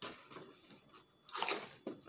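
Crumpled paper wrapping crinkling and a cardboard box rustling as hands rummage inside it. There is a louder crunch of paper about one and a half seconds in, followed by a short click.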